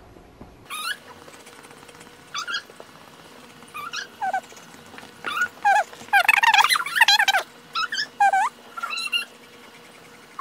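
A household pet giving a series of short, high-pitched whining cries, thickest a little past the middle.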